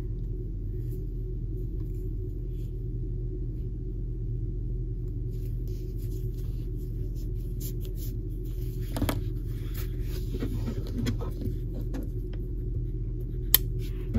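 Steady low room hum with faint rustling and light ticks of hands working a yarn needle through cotton crochet, and a couple of sharp taps near the end.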